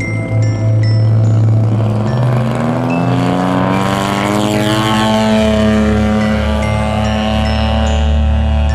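Music with a blocky synth bass and short chime-like notes, over a radio-controlled aerobatic airplane's engine that rises in pitch as it powers up for takeoff and then holds steady at full power.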